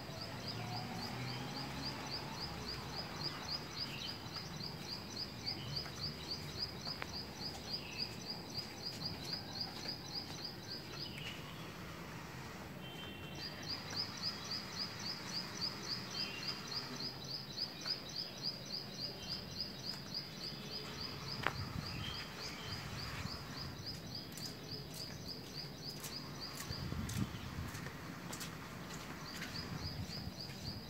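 Outdoor morning ambience of birds calling: a high, rapid chirp repeated evenly about four times a second in long runs with two short breaks, over scattered shorter bird calls and a faint low background hum.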